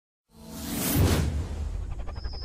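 Whoosh sound effect of an animated logo intro. It starts about a third of a second in, swells to a peak around one second and eases off, over a steady low drone.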